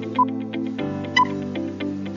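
Countdown-timer music: sustained synth tones with a short high beep about once a second, marking each second of the count.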